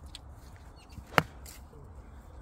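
Golf club striking a golf ball on a tee shot: a single sharp crack about a second in.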